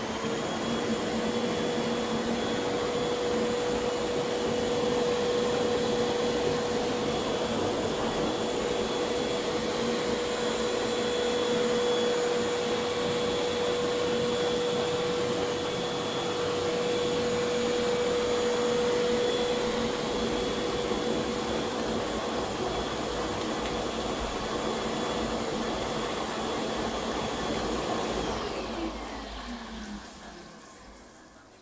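Air blower of a portable bubble-bath mat running steadily with a constant whine, pushing air through the mat so the bath water bubbles. Near the end it is switched off and its whine falls in pitch as it winds down.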